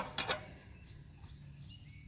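A few light metal clicks near the start as a carabiner is picked up off the table, then a quiet outdoor background with faint bird calls.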